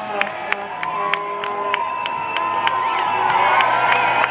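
Parade-route crowd cheering and calling out, many voices overlapping and gliding up and down in pitch, with a fast regular ticking underneath, about four a second.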